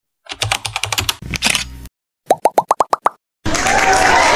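Animated-title sound effects: a quick run of keyboard-typing clicks, then about seven short plops climbing in pitch, and a hissing whoosh with a rising tone starting near the end.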